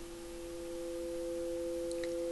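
Sound-healing tones: two steady pure tones about a fifth apart, held together and slowly growing louder.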